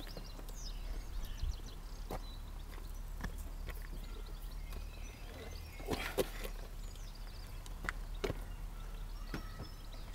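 Scattered knocks and clunks as an ATV with its engine off is tipped up by hand onto its rear wheelie bar, loudest in a cluster about six seconds in as it comes up onto the rollers. Birds chirp faintly near the start, over a steady low hum.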